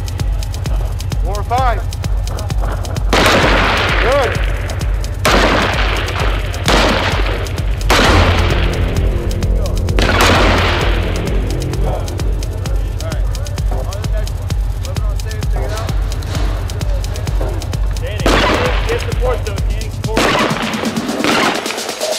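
Background electronic music with a steady bass beat, over which M4 carbine single shots (5.56 mm) crack out one at a time. There are about seven shots a second or two apart, with a long pause in the middle, each followed by a short echo.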